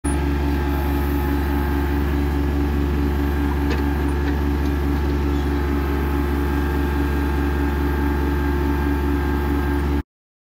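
Kubota compact tractor's diesel engine running at a steady speed, with a few faint clicks near the middle.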